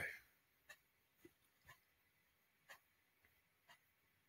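Near silence: room tone with a few faint, short clicks, roughly one a second.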